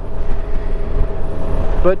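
Riding noise on a Honda Gold Wing GL1800 motorcycle: a loud, fluctuating low rumble of wind buffeting and road noise, with a faint steady whine over it.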